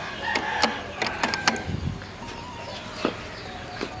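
Game chickens clucking in short calls, mostly in the first second and a half. A few sharp clicks and taps are scattered through it.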